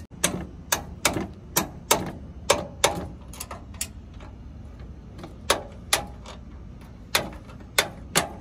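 Metal-on-metal clicks and taps of hand tools and bolts working on a truck's front upper control arm mounts: sharp, irregular clicks, two or three a second, with a pause of about a second and a half in the middle.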